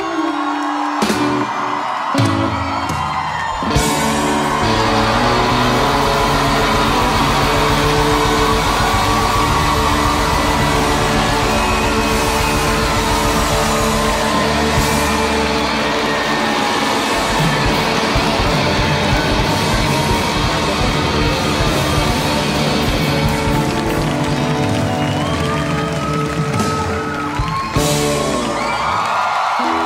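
Rock band playing live on electric guitars and drums: a few clipped hits in the first seconds, then the full band plays on steadily and loud. Audience whoops rise over the music near the end.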